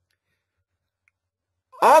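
Near silence, then a man starts speaking near the end.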